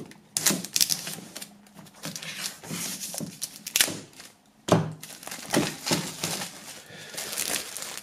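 Clear plastic shrink-wrap being slit with a knife and peeled off a metal tin box, crinkling and crackling in irregular bursts with a few sharp clicks.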